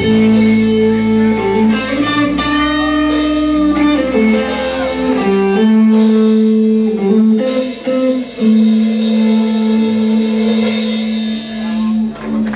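A live rock band: electric guitars hold long, sustained notes over bass, with the notes shifting every second or two and a cymbal crash about every second and a half.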